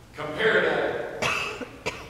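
A person coughing and clearing their throat, in two bursts, with a sharp click near the end.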